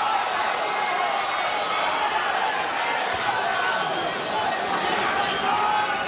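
Boxing arena crowd: a steady din of many voices with scattered shouts, and occasional sharp smacks of gloves landing.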